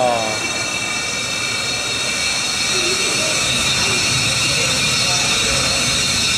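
Electric motors of a small combat robot whining at a steady high pitch, with a rush of mechanical noise underneath.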